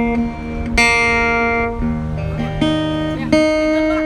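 Acoustic guitar being tuned: single strings plucked one at a time and left to ring, about four notes, with the pitch shifting between them as the pegs are turned.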